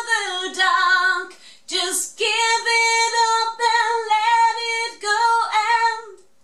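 A woman singing alone, unaccompanied, in long held notes with a slight waver. She sings two phrases with a short break about a second and a half in, and her voice stops just before the end.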